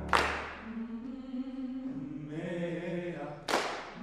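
A vocal ensemble singing held chords. Two sharp crashes ring and hiss away, one at the start and one about three and a half seconds later.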